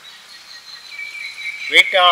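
Insects trilling in a steady, thin, high tone through a pause in talk; a man's voice starts near the end.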